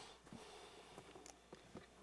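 Near silence: room tone with a few faint, small clicks.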